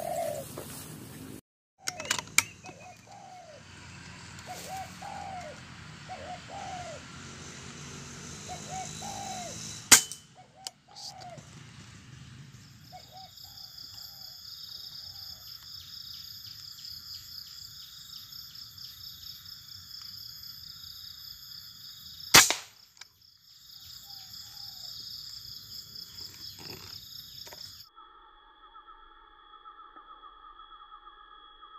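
Two sharp cracks of a PCP air rifle firing, about ten seconds in and again at about twenty-two seconds, the second the louder. Over the first dozen seconds spotted doves coo again and again in short phrases. From about twelve seconds a steady pulsing high-pitched buzz runs behind, and near the end everything gives way to steady electronic tones.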